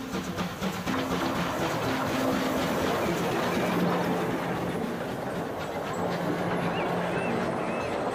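A steam-hauled passenger train passing close by: a steady rumble with the wheels clattering over the rails as the coaches roll past. Background music with held low notes plays underneath.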